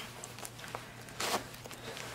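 Faint rustling of a winter anorak's fabric shell as hands handle the front flap, with small ticks and one brief louder swish about a second and a quarter in.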